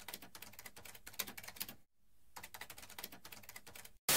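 Faint computer-keyboard typing sound effect: quick, even clicks, roughly ten a second, in two runs with a short break near the middle.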